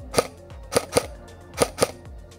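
An airsoft electric gun (AEG) firing five single shots, each a sharp crack: one alone, then two quick pairs. These are test shots at a distant target to check that the gun shoots straight.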